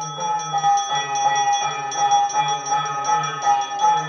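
Brass puja hand bell rung continuously during the aarti, its clapper striking about four times a second and the metallic ringing tone sustained between strikes.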